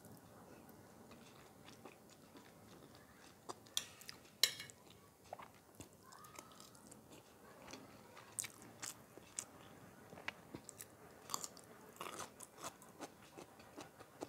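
Close-miked chewing of a mouthful of Turkish white bean stew (kuru fasulye), with wet mouth clicks and smacks scattered through; the sharpest click comes about four and a half seconds in.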